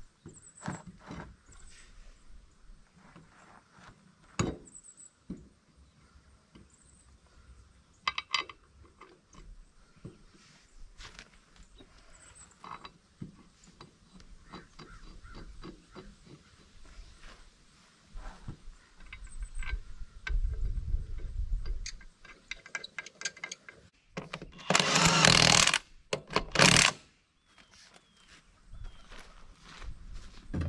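A tractor's front wheel being bolted back onto its hub: scattered metal clinks and knocks from handling the wheel and lug nuts, then a power impact wrench running the nuts down, once for nearly two seconds and once briefly, near the end.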